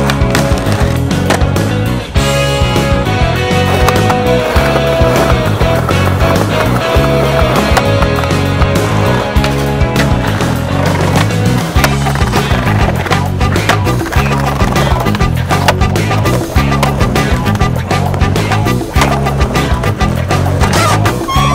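Music with a steady bass line, and skateboard sounds over it: wheels rolling on concrete and the sharp clacks of boards popping and landing.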